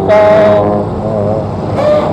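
Road traffic beside a bicycle lane: a steady low engine hum and road noise from motorcycles, cars and a truck. It follows a drawn-out spoken "so" in the first half-second, and speech starts again near the end.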